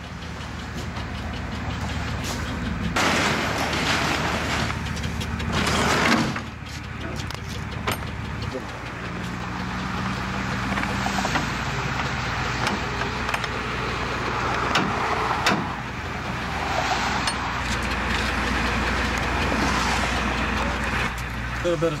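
A diesel box truck's engine running with a steady low hum. Bursts of rustling noise and a few sharp knocks from handling around the truck sound over it.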